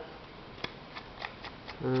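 A handful of small, scattered plastic clicks and taps from the plastic pump head and trigger of a hand-pump garden spray bottle, handled while a part is taken out of it.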